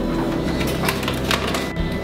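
Background music, with a run of light, irregular clicks in the middle: berries dropping into a plastic blender jar.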